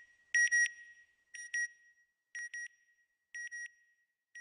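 Electronic beeping sound effect: pairs of short, high-pitched beeps about once a second, each pair fainter than the last, like a satellite's signal fading out.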